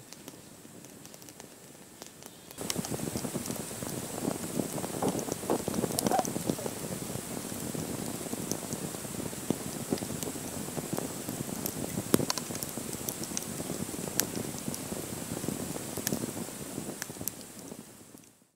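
Wood campfire crackling and hissing, with sharp pops scattered through. It comes in suddenly about two and a half seconds in after a quiet start, and fades near the end.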